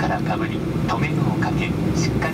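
Steady low rumble of a Boeing 737-800 passenger cabin, with the safety video's recorded Japanese narration on putting on a life vest heard over it.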